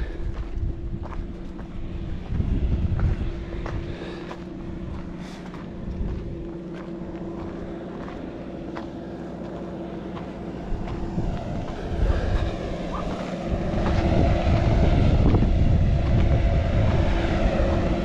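Wind buffeting the microphone and scattered footsteps on a rocky dirt trail, over a steady mechanical hum that grows louder over the last few seconds.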